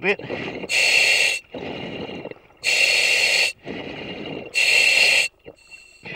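A surface-supplied diver breathing through a demand regulator, heard over the diver's comms: three loud hissing breaths about two seconds apart, with a quieter rush of air between each.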